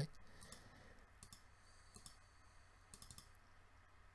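Faint computer mouse clicks, in small clusters a few times, as folders are opened in a file manager, over near-silent room tone.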